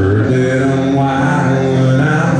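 Live country music played on electric guitar by a solo performer, with a low note held steadily through most of it.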